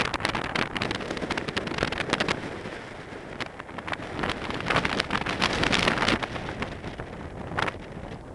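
Wind buffeting the camera's microphone: a rough, rumbling rush that swells and eases in gusts, strongest about five to six seconds in, then easing near the end.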